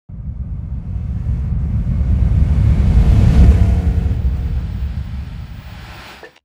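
A deep rumble that swells to its loudest about halfway through, then fades away.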